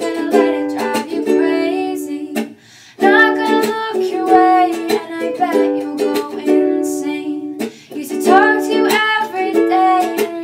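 A young woman singing a pop breakup song while strumming chords on an acoustic ukulele. The playing and singing break off briefly twice, about two and a half seconds in and again near eight seconds.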